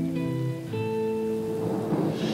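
Acoustic and electric guitar playing held notes, changing a few times, in a slow folk-reggae instrumental passage. A grainy rustling sound builds near the end.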